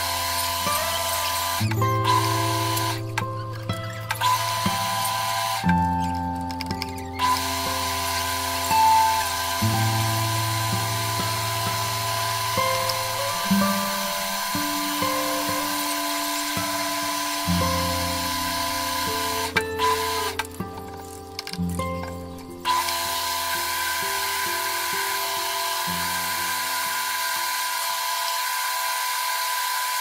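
Background music with a bass line, laid over a metal lathe running as it cuts a metal bar, a steady whine with machining noise. The machine noise drops out briefly several times.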